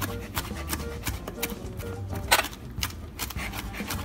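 Kitchen knife chopping cooked, peeled shrimp on a plastic cutting board: a quick, uneven run of blade strikes, several a second, with one louder chop a little past halfway.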